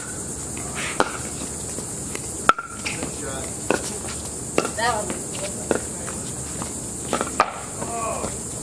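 Pickleball rally: paddles striking a hollow plastic ball, about half a dozen sharp pops roughly a second apart, two in quick succession near the end, over a steady high hiss.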